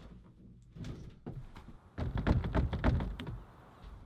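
Metal lever handle on a locked wooden shed door being worked: a few light clicks, then about two seconds in a burst of rattling and thunking as the door is pulled against its frame and holds.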